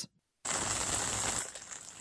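A moment of silence, then the steady hiss and patter of pouring rain, easing slightly near the end.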